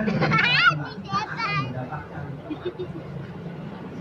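Crowd of worshippers talking, with a child's high-pitched voice calling out twice in the first two seconds over a man's low voice.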